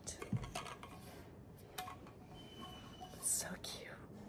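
Quiet handling of an insulated tumbler with a clear plastic lid and straw: scattered small clicks and taps as it is turned in the hand, with a short breathy sound about three seconds in.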